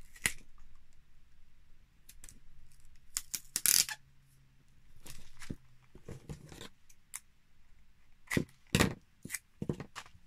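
Sellotape being pulled off its roll in short ripping bursts, and a clear plastic pocket crinkling as it is handled and taped shut. The loudest rips come about a third of the way in and again near the end.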